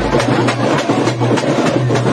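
Fast, loud drumming with many quick strikes, heard over the din of a packed crowd.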